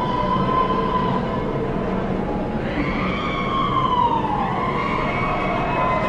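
A long, siren-like wailing tone: held steady at first, then falling in pitch from a little past the middle, over a steady lower drone.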